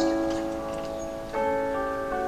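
Solo piano playing slow, sustained chords, with a new chord struck at the start and another about a second and a half in.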